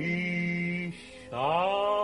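A male cantor singing cantorial chant: a long held note, a short break about a second in, then a new note that scoops upward and is held.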